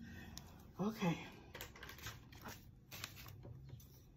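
Faint light taps and small clicks of a plastic ruler and a paper envelope being handled on a desk, with a brief voiced sound about a second in.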